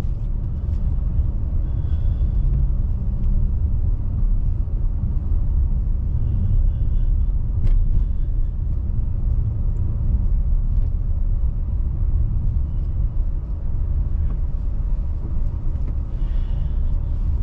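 Car road and engine noise heard from inside the cabin while driving: a steady low rumble of tyres and engine, with one brief click near the middle.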